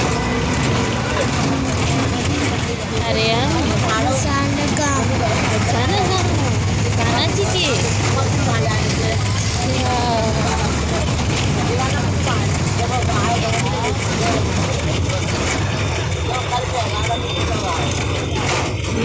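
Steady low rumble of a moving vehicle's engine and road noise heard from inside the vehicle, with indistinct voices over it.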